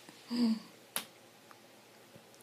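A baby gives one short, soft grunt about half a second in, then a single sharp click sounds about a second in.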